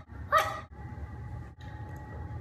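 A dog barking: one short, sharp bark about a third of a second in, the last of three alike barks in quick succession.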